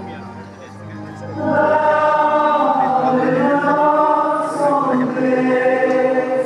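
Choir singing, soft for the first second and a half and then swelling into long held notes.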